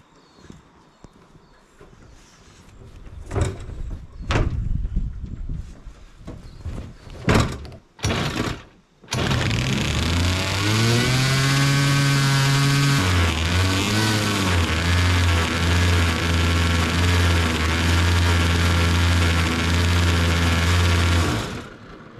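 Homemade jetboard's twin two-stroke engines starting after a few scattered knocks and running very loud with the exhaust not mounted. The pitch climbs, drops about four seconds later and holds steady, then the engines cut off suddenly near the end.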